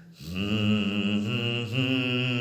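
A man's voice humming a long wordless held note after a brief breath at the start, chant-like and slightly wavering, stepping up in pitch near the end.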